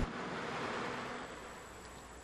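Faint outdoor street ambience: an even hiss that slowly fades, with a thin, faint high steady tone running through it.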